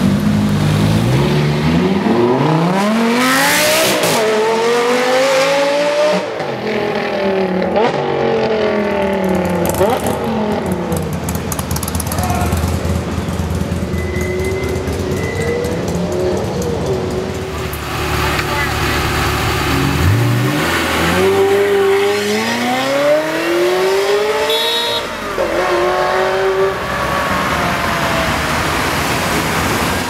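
Lamborghini Gallardo LP570-4 Super Trofeo Stradale's V10 with a Larini aftermarket exhaust, accelerating hard away, its pitch climbing with quick upshifts. About twenty seconds in a second hard acceleration climbs the same way through the gears.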